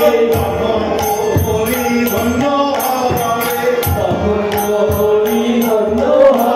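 Kirtan music: a harmonium sounding with voices singing a devotional melody, while kartal (small brass hand cymbals) are struck in a steady rhythm, about two or three clashes a second.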